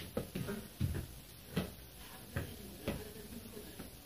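A small football being kicked and bouncing on a hard floor: four or five separate dull thuds, a little under a second apart.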